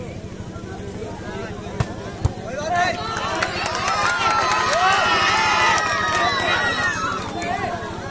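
Volleyball rally: two sharp smacks of hands on the ball about two seconds in, then many voices shouting over one another for several seconds, loudest in the middle, with further ball hits among them.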